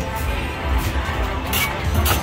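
Slot machines in a casino playing electronic music and tones over a steady low hum, with a couple of short clicks near the end.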